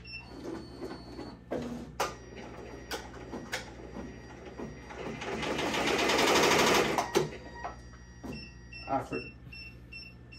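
Ricoma multi-needle embroidery machine starting a stitch run: a few clicks and knocks, then about two seconds of fast stitching that climbs in loudness and stops abruptly. A string of short, evenly spaced beeps follows near the end. The run stops because the needle in use, the fourth, is not threaded.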